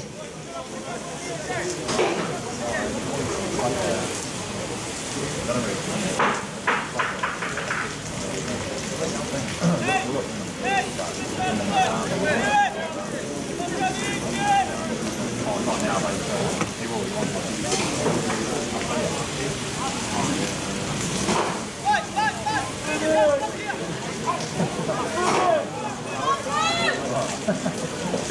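Steady hiss of rain falling, with people shouting and calling out at intervals.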